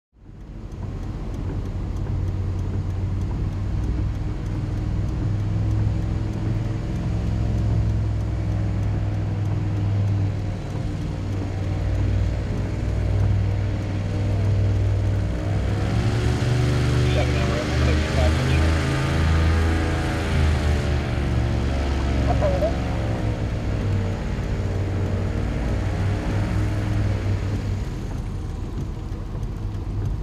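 Airboat engine and caged propeller running steadily with a heavy low rumble; about halfway through it grows louder and its pitch rises as it is throttled up, then the pitch drops back near the end.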